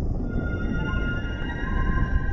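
Logo intro music: a low rumble under several held, eerie tones that come in one after another.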